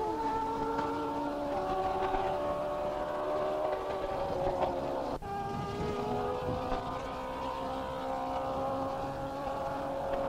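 Racing saloon car engines running at speed on a banked track, a steady engine note that falls slowly in pitch at first. About five seconds in the sound cuts abruptly to another steady engine note.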